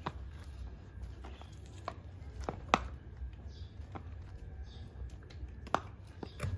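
A few scattered sharp clicks and knocks from a spin mop's handle and plastic mop head being handled. The loudest comes a little under three seconds in.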